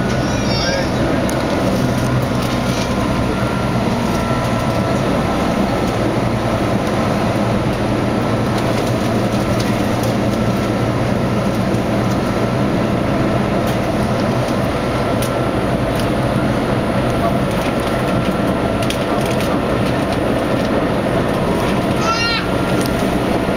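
Keihan limited express electric train running at speed, heard from the driver's cab: a steady rolling rumble with a faint steady whine and scattered light clicks from the wheels on the rails.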